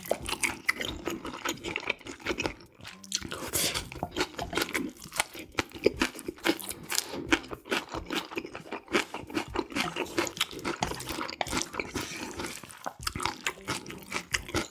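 Close-miked eating sounds: chewing and crunching of black-bean-sauce noodles and green onion kimchi, with many quick, irregular wet mouth clicks.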